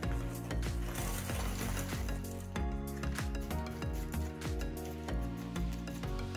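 Small decorative pebbles poured from a plastic bag into a planter pot, a rapid stream of little clicks and rattles.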